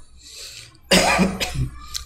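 A person coughing: a breath in, then a short run of sudden coughs starting about a second in.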